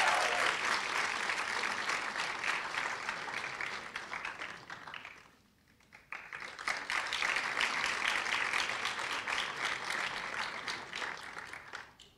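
Audience applauding in two stretches, with a brief near-silent break about five and a half seconds in.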